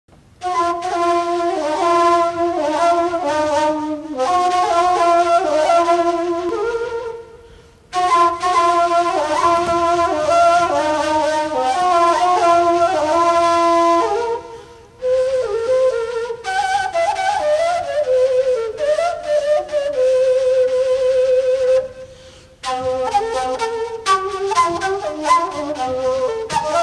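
Kaval, a long wooden end-blown shepherd's flute, playing a solo melody in phrases broken by three short pauses for breath, with a long wavering held note shortly before the last pause.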